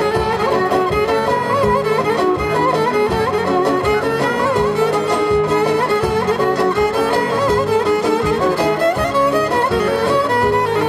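Live Greek folk band playing an instrumental passage between sung verses: an ornamented violin melody over a steady beat from the rhythm section.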